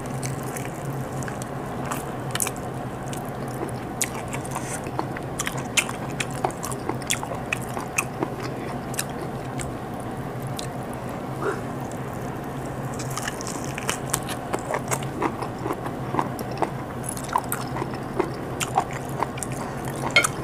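Close-up eating sounds: biting into and chewing tender boiled chicken, with many small wet mouth clicks and the tearing of meat pulled apart by hand, over a steady low hum.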